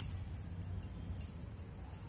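Faint, light metallic jingling in a few scattered tinkles over a low steady rumble.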